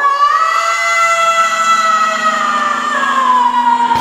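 A rock band's song opens with one long, high held note that sweeps sharply up at the start, then slides slowly down in pitch, with a low steady note joining after about a second.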